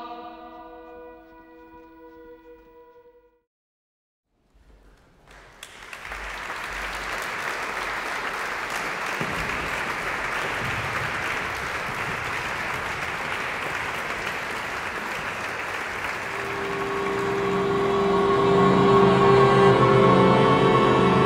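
Audience applauding steadily for about ten seconds in a reverberant church. Before it, the women's choir's held chord dies away, then there is a moment of silence. Near the end, saxophones and women's choir come in with sustained chords that grow louder.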